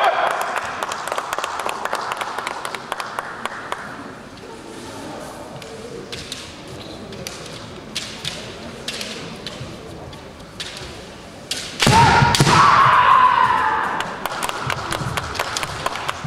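Kendo fencers shouting kiai, with scattered sharp clacks and taps of bamboo shinai and feet on the wooden floor. A loud burst of shouting over heavy floor stamps comes about twelve seconds in, echoing in the gym hall.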